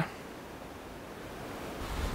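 Steady outdoor background noise: an even hiss with no distinct events, and a low rumble building near the end.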